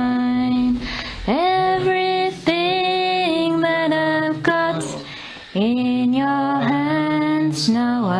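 A woman singing a slow worship chorus unaccompanied, in long held notes, with a short break between phrases about halfway through.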